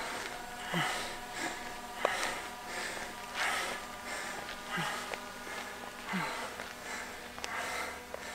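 A person breathing hard, one loud breath roughly every second and a half, over the steady hum of a camera drone's propellers.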